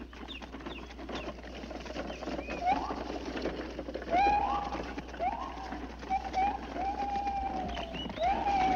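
Forest bird calls from a film soundtrack: a string of calls that each scoop upward and then hold a steady note. They come more often after the first few seconds, and the last call, near the end, is long and slowly falling.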